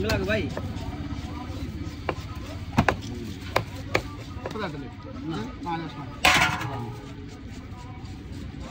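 A heavy fish knife chops into a large fish on a wooden log chopping block: several sharp, separate chops spread over the first four seconds. A short, harsh, louder noise follows about six seconds in, over background voices and traffic.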